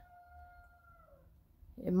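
A faint animal call: one held, pitched note lasting about a second that slides downward at the end.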